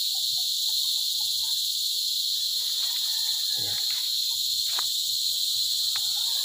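Steady, high-pitched insect chorus in the garden vegetation, one continuous shrill drone that neither stops nor changes.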